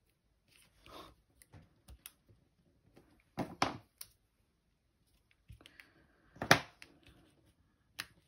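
Intermittent rustling and light tapping of paper and cardstock as small paper pieces are handled and pressed into place on a card. Two sharper, louder handling sounds come about three and a half and six and a half seconds in.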